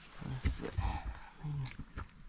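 Low knocks and handling sounds as a hand adjusts a laser level on its magnetic clip on a steel sawmill carriage. A short low hum of a man's voice comes in about one and a half seconds in.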